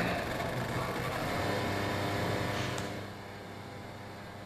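A steady electronic drone made of many held tones, dropping away about three seconds in and leaving a quieter hum.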